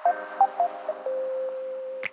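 Electronic synthesizer tones: a held note with a few short higher blips in the first second, then a lower held note from about a second in.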